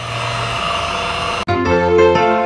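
CNC-converted mini mill running, a steady machine hum with hiss. About a second and a half in it cuts off abruptly and piano music begins.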